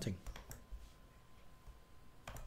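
A few faint clicks from a computer keyboard and mouse, bunched about half a second in, then quiet room tone.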